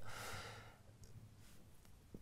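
A soft breath out, like a sigh, in the first half second or so, fading into faint room tone.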